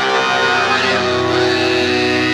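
Hip-hop/trap instrumental beat playing a dense, sustained melodic section. The deep bass drops out right at the start.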